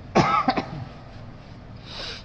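A man coughing into a handkerchief held to his mouth: a short bout about a quarter of a second in, then quiet.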